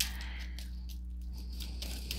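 A steady low hum with no distinct event: room tone.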